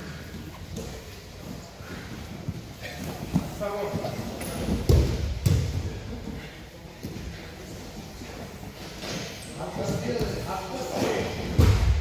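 Wrestlers grappling on a padded mat: dull thuds and scuffling of bodies against the mat in a large gym hall, the heaviest thuds about five seconds in and just before the end.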